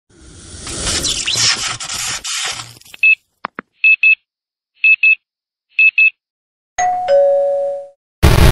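Edited-in intro sound effects: a noisy whoosh for the first couple of seconds, then short high beeps in pairs about once a second, then a two-note falling ding-dong chime like a doorbell near the end.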